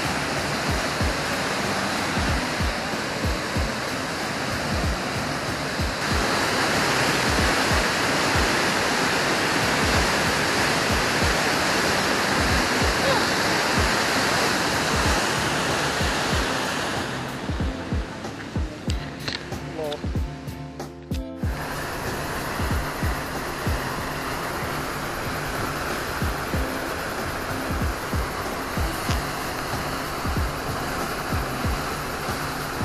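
Huka Falls' whitewater on the Waikato River rushing through the gorge as a steady noise, with a background music track and its steady beat laid over it. From about seventeen seconds in the water sound fades for a few seconds, leaving mostly the music, then returns suddenly.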